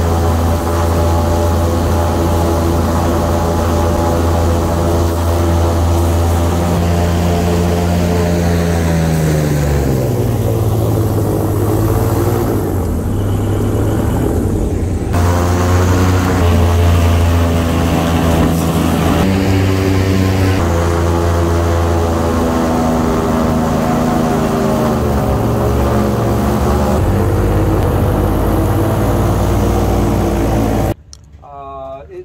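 Airboat's engine and air propeller running at speed, a steady drone whose pitch drops about a third of the way in as the boat slows, then climbs again around halfway and shifts a few more times.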